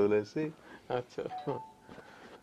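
A short electronic two-note chime, a lower tone then a higher one held about half a second, sounding after a few spoken words.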